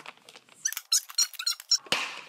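A quick run of short, high-pitched squeaks from a plastic VHS case being gripped and turned in the hand, ending in a sharp click.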